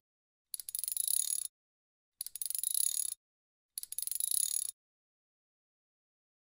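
Three short bursts of a high-pitched, rapidly clicking buzz, each about a second long, with dead digital silence between them: an added sound effect.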